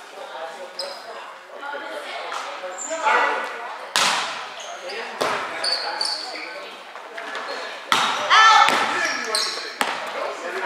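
A volleyball being played in a gym rally: several sharp slaps of hands and arms on the ball, the first about four seconds in and a cluster near the end. Between the hits come short high squeaks and players' voices calling out.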